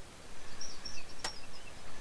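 A few faint, short, high bird chirps over a steady background hiss, with a single sharp click a little past the middle.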